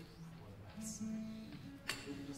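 Quiet single notes on stringed instruments, held one after another at different pitches, as players tune up between songs. A sharp knock sounds near the end.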